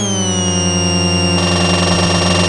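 Electronic intro music: a loud, held synthesizer tone with many overtones, its highest pitches easing down at the start and then settling steady, with a grainier layer joining partway through.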